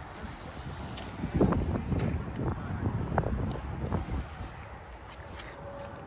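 Wind buffeting a phone's microphone outdoors: an uneven low rumble that rises and falls throughout, with a few brief, faint voice fragments.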